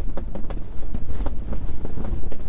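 Wind buffeting the microphone: a loud, steady low rumble, with scattered light clicks and taps through it.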